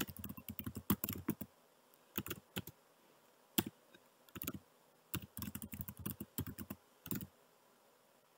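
Computer keyboard typing in short bursts of keystrokes separated by brief pauses, with the longest runs at the start and again about five to seven seconds in.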